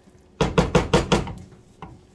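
A spoon knocking against the pan while thick macaroni and cheese is stirred: a quick run of about six knocks that fade, then one faint knock near the end.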